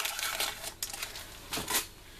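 Cardboard-and-plastic packaging of metal cutting dies being handled as the dies are taken out: rustling with several sharp clicks, the loudest near the end.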